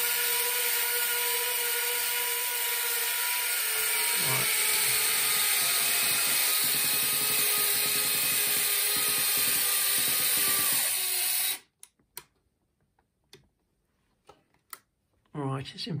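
Small electric leg actuators on a 1/12-scale model missile launcher running together with a steady whine as they slowly lower the legs. The whine cuts off suddenly about eleven and a half seconds in, leaving near silence with a few faint clicks.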